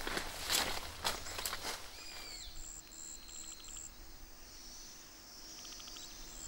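Rustling and crackling of leaves and twigs as an Indian rhinoceros feeds in forest undergrowth, louder in the first two seconds. After that, quieter forest calls: a bird's descending whistle, a row of short high chirps, and brief rapid trills of birds or insects.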